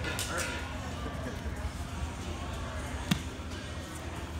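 Two grapplers scuffling on floor mats during a sweep, with one sharp impact on the mat about three seconds in, over a steady low room hum.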